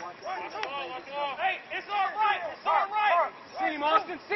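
Indistinct raised voices of several people calling out and talking over one another, no words clear.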